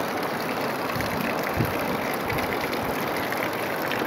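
Heavy rain pouring steadily in strong wind, with a few low thuds.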